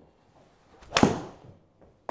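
Golf swing with a Takomo 101U driving iron: a short swish of the club, then one sharp strike of the ball off the mat about a second in, dying away quickly.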